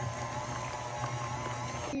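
KitchenAid tilt-head stand mixer running steadily, its flat beater churning a thick chicken and cream cheese casserole mixture in the steel bowl; the motor cuts off just before the end.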